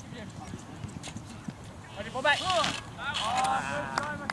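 Shouting voices from players or spectators across an outdoor soccer field: two calls in the second half, over faint scattered clicks and taps.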